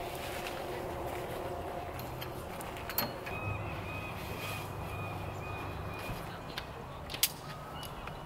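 A folding cot tent being opened out by hand: fabric rustling, with two sharp clicks from its frame, about three seconds in and a louder one near the end. Short bird calls repeat faintly through the middle.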